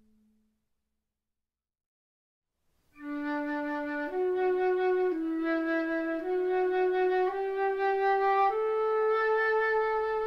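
Solo transverse flute playing a slow melody of held notes after about three seconds of near silence. The notes change about once a second, climbing mostly step by step, and the last note is held longer.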